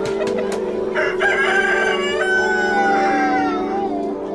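A rooster crowing once, a long call starting about a second in that breaks midway and falls in pitch at the end, over steady background music.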